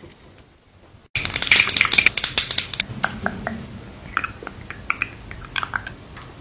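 Close-miked sticky crackling and clicking of a brush working a thick glitter gel. It starts abruptly about a second in, dense for about a second and a half, then thins to scattered separate clicks.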